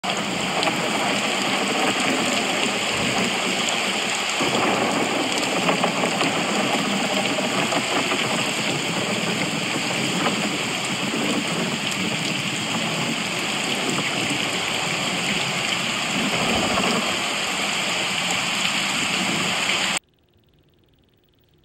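Steady, heavy rainfall, an even rushing hiss of rain.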